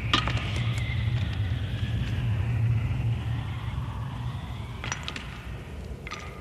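Cartoon sound effect of a pebble dropped down a deep shaft to gauge its depth: a faint wavering whistle as it falls, then a small click about five seconds in as it lands, over a steady low rumble.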